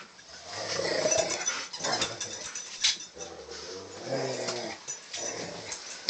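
A husky growling and whining in play as it goes for a toy, in bouts of a second or so, with a sharp knock about halfway through.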